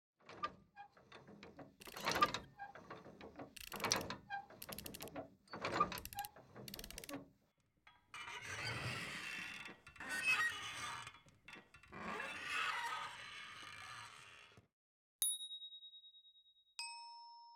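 Mechanical clicking and rattling, with a louder ratchet-like burst about every two seconds. This gives way to several seconds of rough, swelling scraping noise. Near the end a single high bell-like ding rings out.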